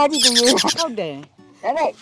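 A person's voice making drawn-out, gliding vocal sounds: a squeaky, breathy stretch in the first second, then a short rising-and-falling call shortly before the end.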